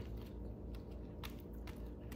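Quiet chewing: a few faint mouth clicks over a low steady room hum.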